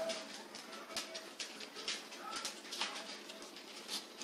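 A boy chewing a big mouthful of shrimp taco: quiet mouth clicks and smacks, with faint short tones now and then in the background.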